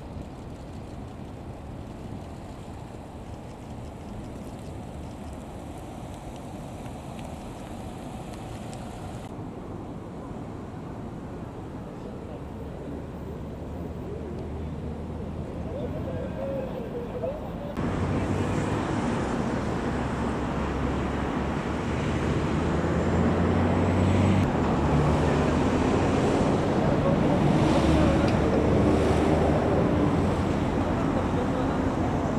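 Toyota Crown police patrol cars rolling past slowly in a line, a steady engine and tyre noise that grows louder. About two-thirds of the way in it jumps to a closer, louder passing car with a low engine hum.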